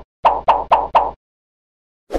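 Four quick cartoon pop sound effects, about a fifth of a second apart, marking thumbs-up icons popping onto the screen.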